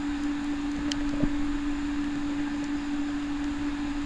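Underwater ambience through a camera housing: a steady low hum over faint water hiss, with a couple of faint clicks about a second in.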